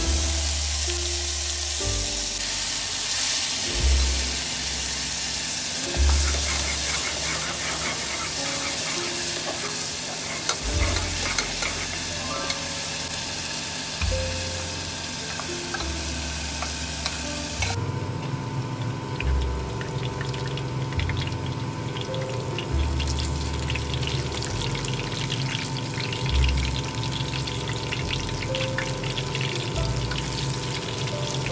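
Food sizzling hard in hot oil in a pressure cooker as a masala paste goes in and is stirred with a ladle. About two-thirds of the way through it changes to a lighter, crackling sizzle of battered pieces shallow-frying in a pan. Soft background music plays underneath.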